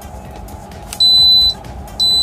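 Built-in alarm buzzer of a Dixell XR20CX refrigeration controller giving one high-pitched half-second beep about a second in, part of a beep each second: the controller is signalling its P4 probe alarm.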